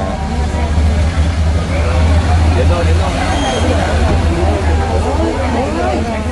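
A convoy of motorcycles passing, their engines a steady low rumble, with people talking over it.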